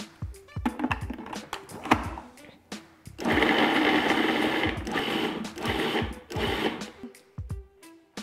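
Cuisinart food processor chopping cauliflower florets into rice-sized bits. The motor starts about three seconds in, runs for about a second and a half, then goes in three short pulses and stops about seven seconds in.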